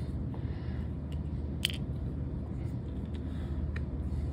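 Steady low room hum with a few faint clicks of small airbrush parts being handled and fitted back into their holder; one sharper click about one and a half seconds in.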